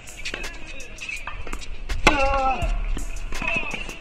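Tennis rally on a hard court: sharp racket-on-ball strikes and ball bounces, with a player's short grunt on a shot about two seconds in.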